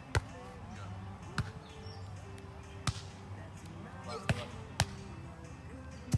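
Volleyball struck by bare hands during a beach volleyball rally: a loud slap of the jump serve just after the start, then four more sharp slaps spread over the next few seconds as the ball is played back and forth.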